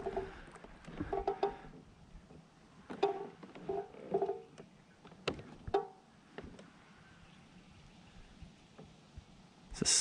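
Faint clunks and short squeaky rings from a sit-on-top pedal kayak and its paddle as it glides, in three small clusters over the first six seconds.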